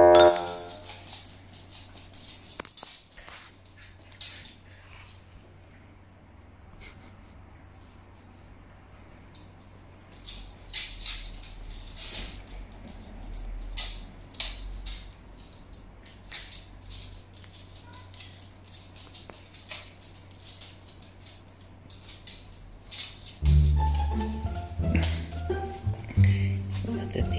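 Scattered light clicks and taps, typical of dogs' claws on a hard wooden floor as the dogs walk about, over a low steady hum. Background music comes in near the end.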